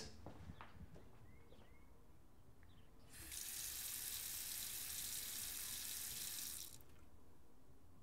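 Kitchen sink faucet turned on about three seconds in, water running in a steady stream into the sink, then shut off a few seconds later.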